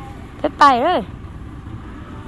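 A high voice calls out once, briefly, with a rising and falling pitch, over a steady low rumble.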